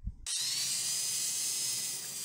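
Electric angle grinder running with a steady high whine, grinding notches into wooden roof rafters. It cuts in abruptly about a quarter of a second in, after a brief low rumble.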